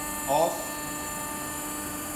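Automatic die cutting press for jewellery dies just switched on, giving off a steady electrical hum with a thin high whine above it.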